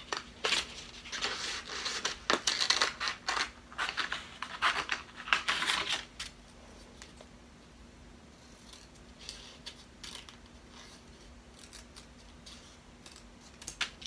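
Scissors snipping through construction paper: a quick run of cuts for about the first six seconds, then much quieter, with only a few faint scattered snips and paper handling.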